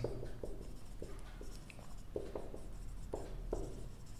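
Marker pen writing on a whiteboard: a series of short, irregular strokes as letters and symbols are drawn.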